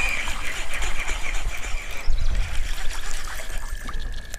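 Water splashing and trickling as a small hooked largemouth bass is reeled in and thrashes at the surface beside a kayak.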